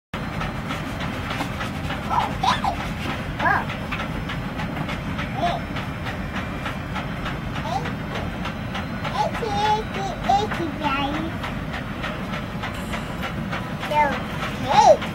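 A young child's short vocal sounds come a few times over a steady background noise with rapid, even ticking.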